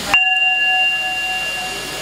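A single bell-like ding struck a moment in, ringing on with a steady, slowly fading tone.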